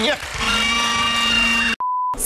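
Game-show signal for a letter that is not in the word: a steady buzzing tone lasting over a second, cut off suddenly. Moments later a short, pure 1 kHz test-tone beep sounds with a colour-bar test card.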